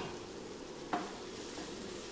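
Onions, tomatoes and curry leaves sizzling steadily in oil in a nonstick frying pan while being stirred with a spoon.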